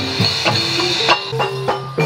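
Javanese gamelan music for buto gedruk dance: struck metallophone notes and drum strokes in a steady beat, with jingling of bells.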